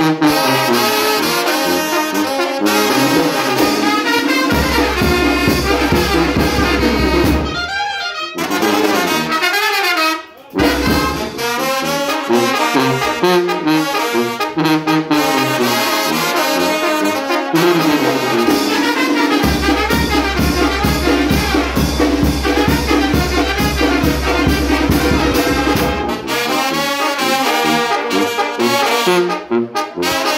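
Mexican brass banda playing live: trumpets, trombones, clarinets and alto horns over a sousaphone and bass drum. The music breaks off for an instant about ten seconds in and comes straight back.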